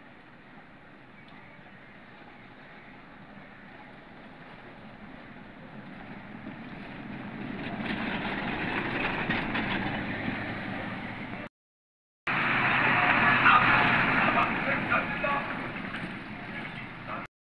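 Buses driving past on an unpaved gravel road, engine and tyre noise on the loose surface. A coach's approach builds slowly and is loudest about eight to ten seconds in. After a brief cut to silence, a second bus passes close by, louder still.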